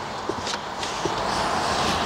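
Handling noise from the folding third-row seat and carpeted cargo panel of a Peugeot 5008's boot: soft rustling and scraping with a few light knocks in the first second.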